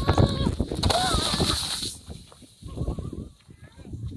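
Crunching and scraping on packed snow, loud for about two seconds and then falling away. A child's brief wordless cry comes about a second in.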